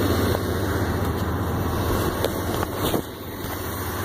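A vehicle engine idling with a steady low hum. Fabric rubs and a few sharp clicks come from a phone shifting in a shirt pocket about two to three seconds in, after which the sound drops a little.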